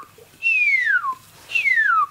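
A man whistling short downward-sliding notes, each falling steadily from high to low: two full ones about a second apart, with the end of a previous one at the start. They mimic the echolocation call of the chocolate wattled bat, which sweeps down from about 70 kHz to 50 kHz, here whistled far below its real pitch.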